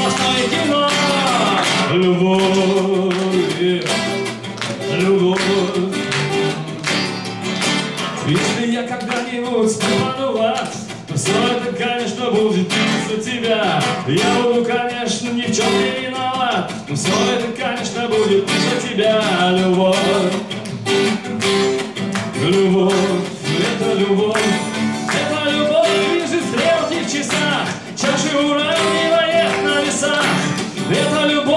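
A man singing a song in Russian bard style to his own strummed acoustic guitar.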